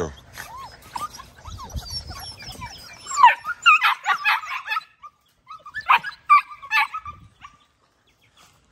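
A dog shut in a wire crate whining and crying in high notes that slide up and down. The cries are faint at first, then come louder in two runs, about three and six seconds in.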